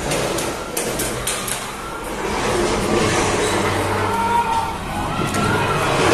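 A film's soundtrack playing over cinema speakers in the auditorium: a dense mix of sound effects with vehicle and street noise, and some music.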